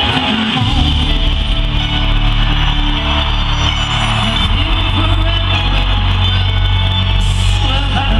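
Live concert music heard from far out in an arena audience: a loud, steady, bass-heavy backing with a woman singing into a microphone.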